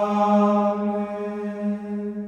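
Sung liturgical chant: a long 'Amen' held on one steady low note.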